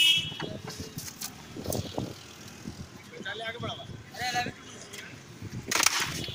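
A wrecked motorcycle being lifted down off a wooden handcart by several men, with a loud knock and a short high squeal of metal at the start, men's voices calling out in the middle, and another loud knock near the end as the bike comes down onto the ground.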